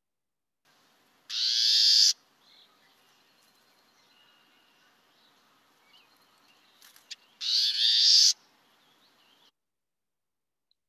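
Warbling vireo giving its call note twice, about six seconds apart, each call just under a second long, over faint field-recording hiss.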